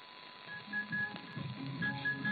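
Weak AM mediumwave broadcast from Bangladesh Betar on 693 kHz, heard through static with a muffled, narrow sound. After a moment of hiss, music begins about half a second in: short high held notes over a low sustained note.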